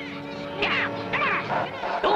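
Cartoon voice of a Smurf just turned purple, squawking the short, duck-like "Gnap!" cry several times in quick succession, starting about half a second in, over background music.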